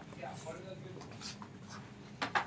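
Faint handling and rustling of a small handheld whiteboard being lowered and put aside, with a few soft ticks and a brief faint murmur of a woman's voice early on, in a small room.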